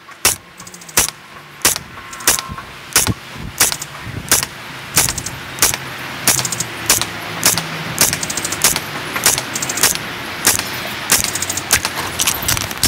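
Tokyo Marui MTR-16 G Edition gas blowback airsoft rifle firing aimed single shots, a sharp report about every two-thirds of a second, emptying a 20-round magazine.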